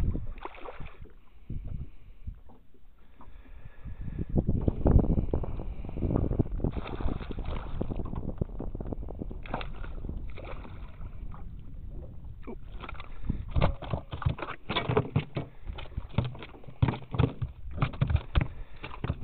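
Hooked northern pike thrashing and splashing at the water's surface beside the boat. In the last few seconds, a quick run of sharp knocks and thumps in the boat as the fish comes aboard.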